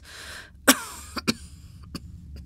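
A woman coughing, one loud sharp cough about two-thirds of a second in, then a couple of smaller coughs, after a breathy exhale: the cough of an ill old woman. A low steady hum runs underneath.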